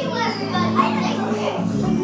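Children's song music playing with young children's voices and play noise over it.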